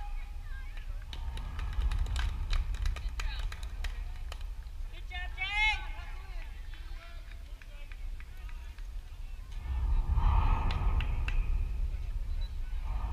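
Spectators' voices at an outdoor softball game, with one high-pitched shout about five and a half seconds in and scattered sharp clicks early on. A steady low rumble of wind on the microphone runs underneath, and the voices swell about ten seconds in.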